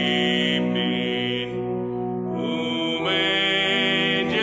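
Church organ playing sustained chords that change every second or so.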